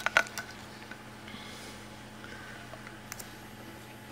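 Handling noise from an iPod's plastic case against a wooden tabletop: a sharp click just after the start and a few lighter ticks, then a couple of faint clicks later on, over a steady low hum.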